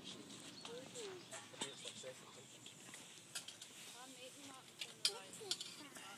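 Faint, indistinct voices talking, with a few light clicks and knocks scattered through; the sharpest click comes about five seconds in.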